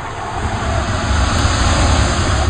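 Cinematic whoosh sound effect with a deep rumble, swelling steadily in loudness like a jet passing.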